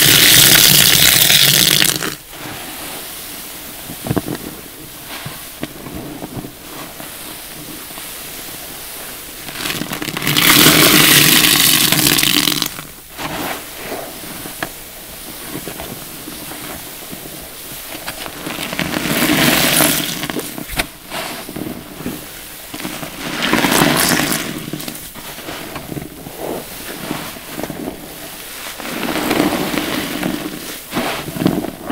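A soaked sponge squeezed in a tub of foamy soapy water. Streams of water gush out and splash into the basin in bursts of one to two seconds: one at the start, one about ten seconds in, and three shorter ones later. Between them come wet squelching and the crackle of foam.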